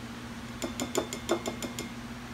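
A measuring cup tapped against the rim of a glass mixing bowl to knock minced garlic out: a quick run of about eight clinks over just over a second, with a slight glassy ring.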